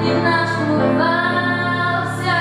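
A young female vocalist sings a song into a handheld microphone over instrumental accompaniment, holding long, gliding notes.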